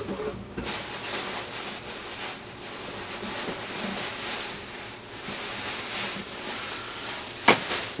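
Rustling and scraping of packaging as a cardboard box is opened and a plastic bag of items is pulled out of it, with one sharp knock near the end.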